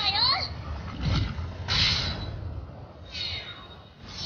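Anime film soundtrack: a character speaks a short line in Japanese, followed by a few short bursts of action sound effects, the loudest about two seconds in.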